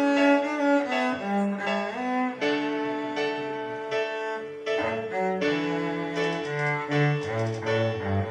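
A cello bowed in a slow melody of held notes that step and sometimes slide from one pitch to the next.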